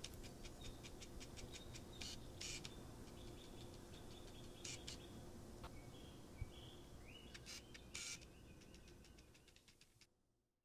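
Faint chirping and trains of rapid clicks over a low steady hum, with a few short high tones and a brief rising chirp after about seven seconds; the sound fades out near the end.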